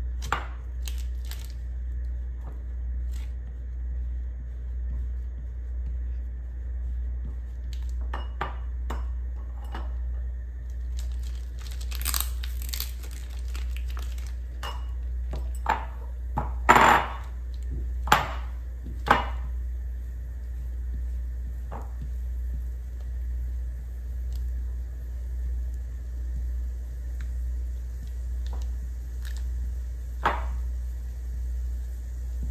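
Parmesan cheese being grated by hand on a flat handheld grater over a glass bowl: scattered short rasps and clicks, with a few sharp knocks, the loudest sounds, a little past halfway. A steady low hum runs underneath.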